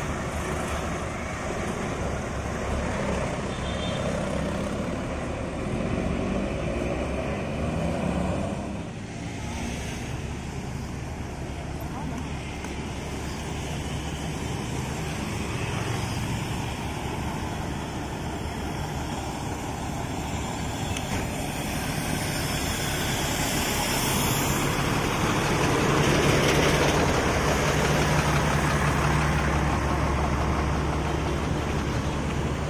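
Large diesel coach engines idling, a steady low hum, with voices in the background. The sound changes about nine seconds in and grows louder toward the end.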